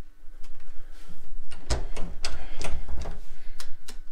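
A run of clicks and knocks, a few faint ones at first, then sharper ones about three a second from a little under halfway in: a hotel room door being unlocked and opened.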